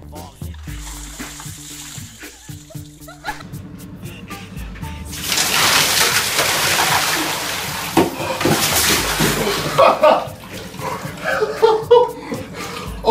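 A bucket of water poured over a person standing in a bathtub: a loud splash and slosh of water on the body and into the tub starts about five seconds in and lasts about five seconds, over background music.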